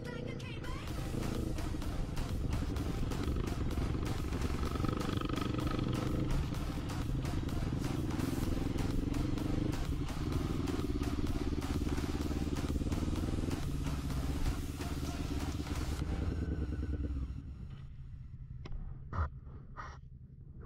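Sport quad (ATV) engine running hard under load up a rough, stony track, with rattling and clattering from the machine over the stones; it eases off and quietens near the end as the quad stops. Music plays over it.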